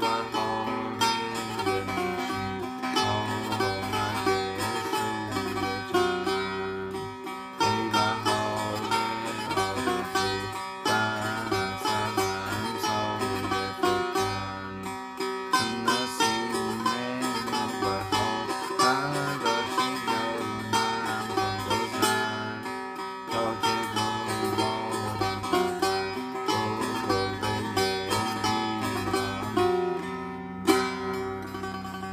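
Setar, the Persian long-necked lute, played solo: a continuous run of quickly plucked notes.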